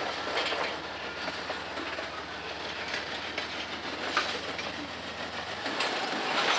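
Freight train cars rolling past, with the steady rumble of steel wheels on rail and a few sharp clicks over the rail joints. Near the end it grows louder as a Norfolk Southern diesel locomotive in the train's consist comes by.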